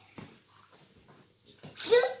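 Mostly quiet, then near the end a child's short, loud exclamation that rises sharply in pitch.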